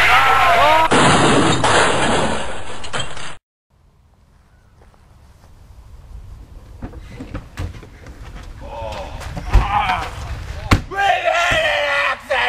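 People in a vehicle crying out, followed by a loud crash noise lasting about two seconds that cuts off suddenly into silence. Quiet outdoor sound then fades up, with two sharp thumps and a few voices near the end.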